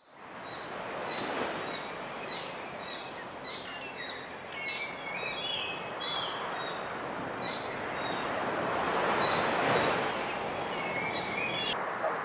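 Surf washing onto a rocky reef shore, a steady rush that swells and eases every few seconds, fading in at the start. Small birds chirp repeatedly over it.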